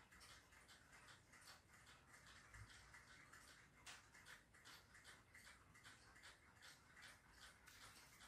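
Faint paper creasing: fingers pressing and running along a fold in a sheet of paper, giving a run of soft, irregular little ticks and rustles.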